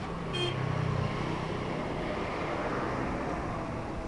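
City street traffic noise: a motor vehicle's engine swells close by for about a second near the start, with a short high beep about half a second in, over the steady rush of traffic.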